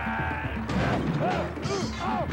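Lively background music with a quick bouncing melody over a steady bass line, with a held, wavering note in the first half-second.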